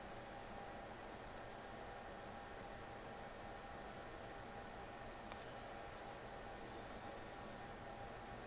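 Steady recording hiss with a faint low hum, broken by a few faint, short clicks, one about two and a half seconds in.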